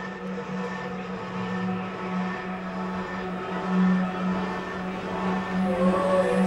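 Electronic music intro: a steady low synthesizer drone with held higher tones above it, slowly swelling. A new note enters near the end.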